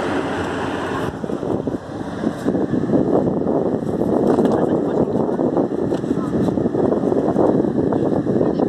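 Wind noise on a phone's microphone over the wash of breaking surf, with voices in the background. The sound changes abruptly about a second in.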